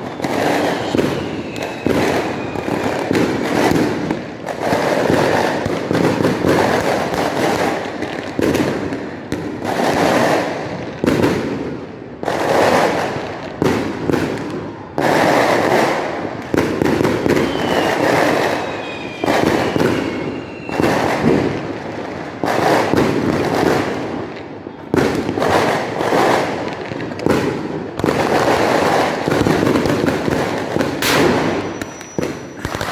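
Neighbourhood fireworks and firecrackers going off without a break: overlapping bangs and crackling that keep rising and falling in loudness, with a faint falling whistle twice, about a second in and again about eighteen seconds in.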